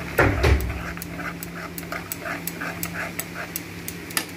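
A dog panting quickly, about four or five breaths a second, after a short loud sound falling in pitch near the start. Sharp metal clicks, like a spoon on the pan, come through at intervals.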